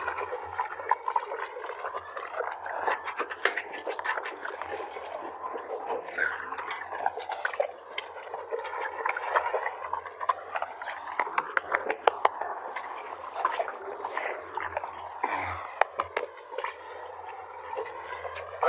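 Tiger eating raw meat from a steel bowl: wet chewing and crunching with many sharp clicks, over a low hum.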